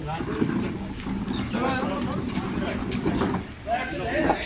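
People talking in a small seated group, the voices indistinct and overlapping, with no clear words.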